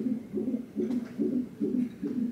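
Fetal heart monitor's Doppler speaker playing an unborn baby's heartbeat as a steady run of soft pulses, about two and a half beats a second.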